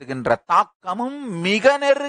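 Speech only: a man talking in Tamil into a microphone, in rapid phrases with short pauses.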